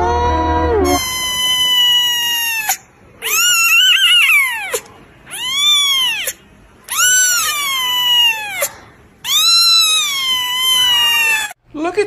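A kitten meowing loudly and insistently: five long, high-pitched cries, each rising and then falling in pitch, with short pauses between them.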